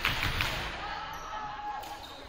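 A volleyball striking hard in an echoing gymnasium, two sharp smacks in the first half-second, with voices around.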